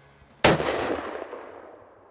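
A single shot from a Winchester XPR bolt-action rifle about half a second in, its echo fading away over the next second or so.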